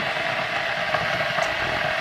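A steady rushing noise from a running appliance, with a faint rustle of paper recipe cards being turned.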